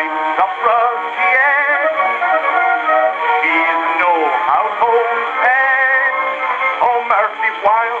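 Ragtime song from a c.1912 acoustic-era record playing through a gramophone horn. The sound is thin, with no deep bass and no high treble, and wavering held notes run through the melody.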